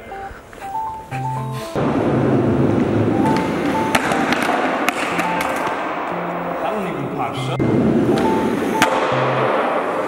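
Skateboard wheels rolling on a smooth concrete skatepark floor, with sharp clacks of the board about four, five and nine seconds in, the last the loudest. Background music with a stepped melody plays over it.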